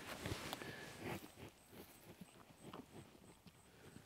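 A cow sniffing at a slice of pumpkin on the ground, faint and sparse: a few soft sounds in the first second or so, then only slight rustles.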